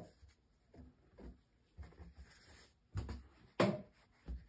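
Soft rubbing and rustling of quilt fabric pieces as they are handled and lined up by hand, with two short louder handling sounds near the end.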